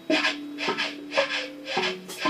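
Electric guitar and drum kit playing together, with a strong hit about every half second over a held low guitar note.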